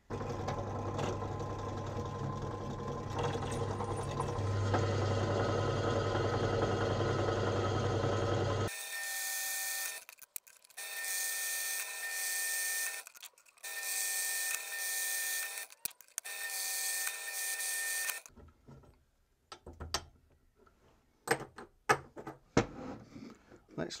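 Bench pillar drill running and boring holes through small steel angle brackets held in a drill-press vice. A steady motor hum fills the first nine seconds or so, then comes a higher whining cut in four runs of a few seconds each. A few clicks and knocks of the parts being handled follow near the end.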